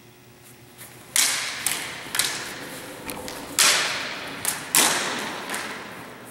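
Steel broadswords clashing blade on blade in a fencing exchange: about six sharp, ringing clashes in uneven bursts, the first coming about a second in, each echoing in a large hall.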